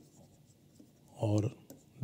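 Faint tap and scratching of a stylus writing on a tablet screen, beginning with a small click.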